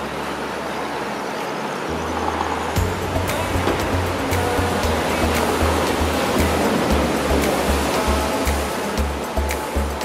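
Surf washing and breaking on the rocks below a seawall, with music with a steady bass beat coming in about three seconds in and carrying on over it.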